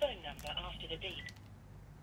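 A faint, murmured voice and a few light clicks, with nothing mechanical running; quieter near the end.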